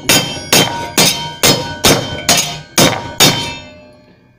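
Rubber mallet striking a thin sheet-metal body panel, seven blows about two a second, the metal ringing briefly after each. It is the bent section of the panel being hammered straight.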